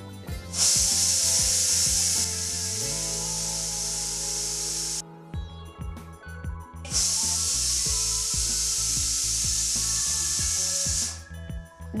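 Pressure cooker whistle venting steam while it cooks chickpeas under pressure: two long, steady, high-pitched hisses of about four seconds each, with a short break between them.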